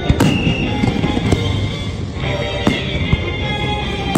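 Fireworks bursting in the air, a few sharp bangs spaced a second or so apart, over continuous show music.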